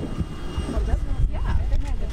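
Several people talking at once, in short broken snatches, over a loud, steady low rumble.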